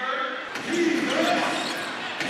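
A basketball being dribbled on a hardwood court, over the murmur of an arena crowd.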